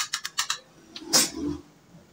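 Egg being beaten in a bowl: quick clicking strokes, about seven a second, that stop about half a second in. About a second in there is a single louder knock with a dull thud.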